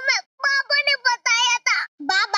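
A young child's high-pitched voice in several drawn-out phrases with short breaks, some notes held.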